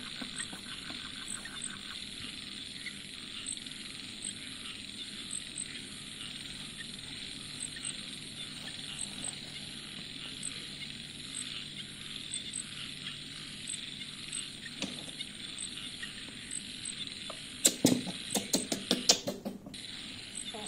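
Terry towel rubbed and handled against a baby monkey over a steady hiss with faint regular ticking; near the end, a quick run of sharp clicks and rustling.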